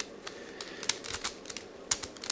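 Layers of a 5-layer hexagonal dipyramid twisty puzzle being turned by hand: several short plastic clicks at irregular intervals.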